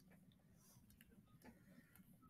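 Near silence, with a few faint scattered ticks from a stylus writing on a pen tablet.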